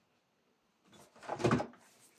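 A brief clatter about a second in: a plastic detergent bottle being lifted out from among others on a cupboard shelf.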